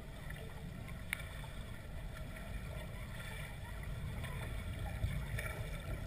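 Muffled underwater pool noise from a submerged camera: a steady low rumble with a faint click about a second in, slowly growing a little louder toward the end.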